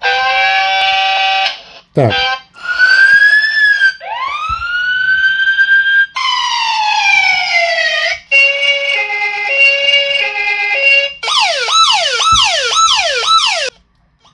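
Built-in siren and alarm sounds from a rugged smartphone's loudspeaker, switched every couple of seconds. In turn come a steady horn-like chord, a tone that rises and falls, a wail that winds up, a long falling glide, a two-tone hi-lo siren, and near the end a fast repeating yelp.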